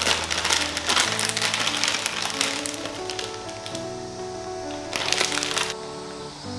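Dry daikon radish strips crackling and their plastic bag crinkling as they are tipped into a glass bowl: a dense run of crackles over the first two seconds or so, and a short second burst about five seconds in. Background music plays throughout.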